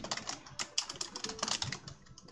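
Typing on a computer keyboard: a quick, uneven run of key clicks.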